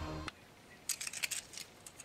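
A few faint light clicks and rattles of a small die-cast toy car being handled, bunched together a little after a second in. Background music cuts out near the start.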